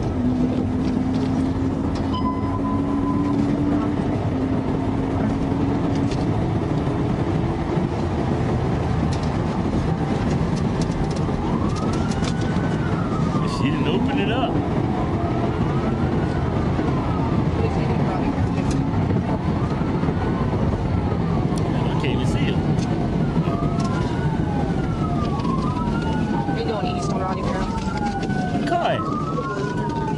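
Police car siren wailing, rising and falling about every two seconds, starting partway through over the steady loud road and engine noise of a patrol car driving fast on a highway.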